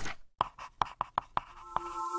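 Animated-logo sound effects: a brief swish, then a quick run of about ten short, dry clicks. A held electronic tone chord comes in near the end.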